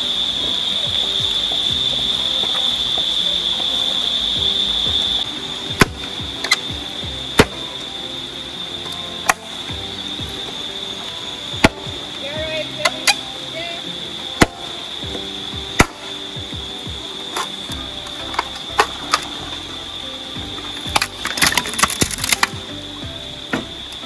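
Machete-type knife chopping into a green bamboo stalk: single sharp knocks a second or two apart, then a quick rattle of cuts about three-quarters of the way through. A steady high-pitched hum runs underneath.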